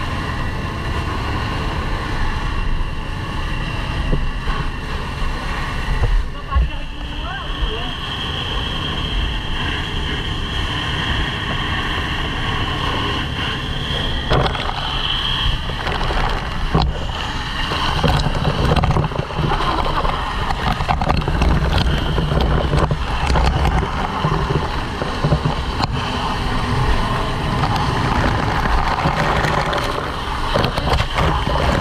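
Fire hose spraying water into a burning corrugated-iron house: a steady rushing hiss of water with spattering, over a low rumble, and a steady high tone through the middle.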